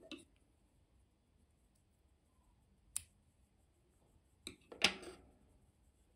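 Metal embroidery scissors being handled to trim thread: faint clicks, one sharp snip about three seconds in, and a louder double clatter near five seconds.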